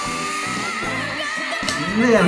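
A young girl singer holding one long high note, wavering slightly near the end, over a pop band backing track.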